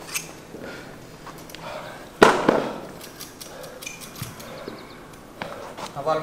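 A barbell and its bumper plates being handled: small clicks and knocks, and one sharp, loud metal clank about two seconds in.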